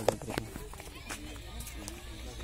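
Footsteps of a person in sandals walking on dry, cracked soil: a few separate scuffing steps, with faint voices in the background.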